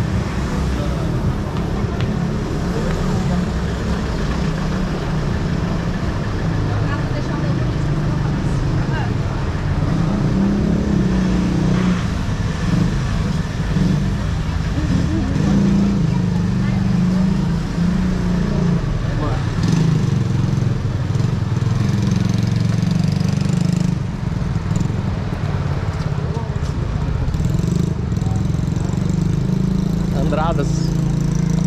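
Busy city-street ambience heard on foot: traffic on the street and the indistinct voices of passers-by, over a steady low rumble.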